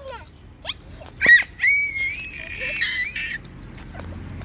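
A toddler's high-pitched squeals of delight: a short, sharp squeal a little over a second in, then a longer held squeal of about two seconds.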